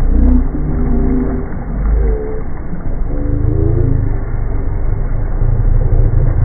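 Muffled, slowed-down audio effect: deep, drawn-out tones that slide up and down in pitch, like a voice pitched down, over a heavy low rumble.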